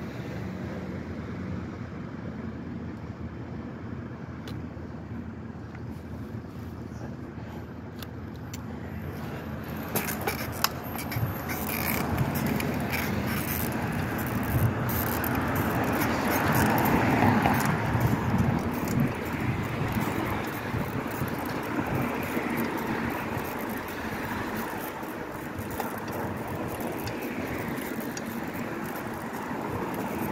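Street traffic noise heard from a bicycle: a steady hum while it stands at the intersection, then, after a few sharp knocks about a third of the way in, louder rumble and rattle as it rides over brick and concrete pavement, loudest around the middle.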